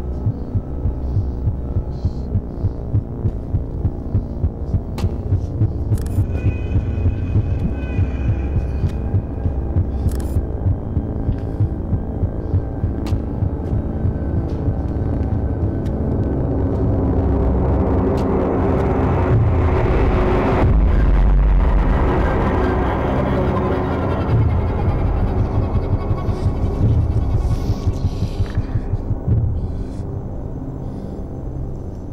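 Suspense score for a horror drama: a low, heartbeat-like pulse about twice a second over a droning hum. It swells to a loud peak about two-thirds of the way through, then the pulse returns.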